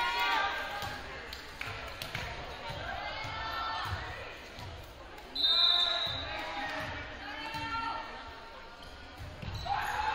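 Players calling and shouting in a gymnasium hall, with a short, sharp referee's whistle blast about halfway through, the loudest sound here. A ball thuds on the wooden floor several times in the second half.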